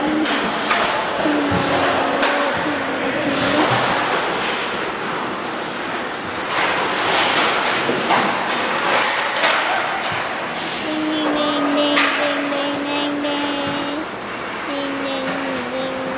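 Ice hockey play: skates scraping across the ice, with sharp clacks of sticks and puck. Over it come long held musical notes of two to three seconds each, in the first few seconds and again from about eleven seconds on.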